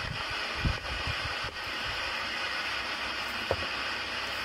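Steady background hiss, with a few low handling bumps in the first second and a single short clink about three and a half seconds in, as of a utensil touching crockery.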